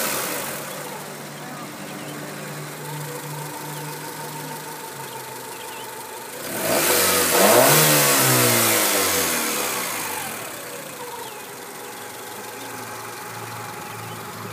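1991 Honda Accord's 2.2-litre four-cylinder engine idling with the air conditioning on. At the start it is settling from a rev, and about six and a half seconds in it is revved once, rising quickly and then sinking back to idle over about three seconds.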